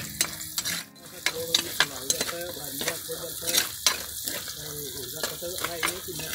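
A metal spoon stirring sliced onions and green chillies frying in oil in a black pot. The frying sizzles steadily, and the spoon knocks and scrapes against the pot in frequent sharp clicks.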